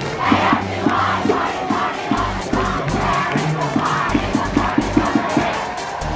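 Stadium crowd in the bleachers cheering and shouting together, many voices at once, with a steady low drum beat underneath from about two seconds in.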